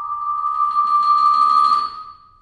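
A single high vibraphone note, held and growing louder, with a faint overtone ringing above it. It stops abruptly just before the end.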